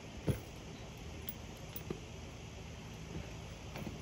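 A rider dismounting from a saddled horse: one dull thump about a quarter of a second in, then a soft click near the middle, over a faint steady outdoor background hiss.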